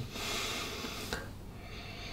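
A man's breath through the nose, about a second long, at a whisky tasting glass, followed by a faint click.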